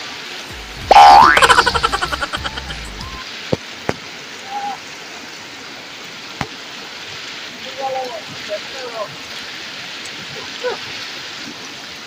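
A loud cartoon 'boing' sound effect about a second in: a rising twang with fast fluttering pulses that die away over about a second and a half. Under it runs the steady rush of a fast mountain river.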